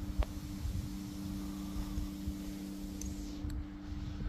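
Wind buffeting the microphone as an uneven low rumble, under a faint steady hum, with a single click just after the start.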